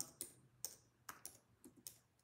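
Faint computer keyboard clicks: about six irregular keystrokes as a prompt is finished and sent.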